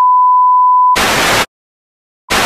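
A steady, single-pitched test-pattern bleep of the kind that goes with TV colour bars. About a second in it cuts off into a half-second burst of TV static hiss.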